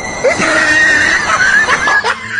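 A dog's high-pitched whining cry that slides and wavers in pitch, with a short rising yelp about half a second in and falling squeals near the end.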